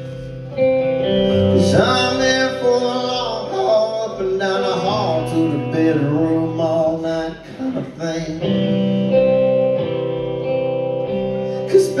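Live solo performance: guitar chords ringing under a man's singing voice, with a long bending vocal line in the middle.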